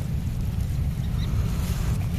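Wind buffeting the microphone outdoors: a steady, fluttering low rumble with a faint hiss above it.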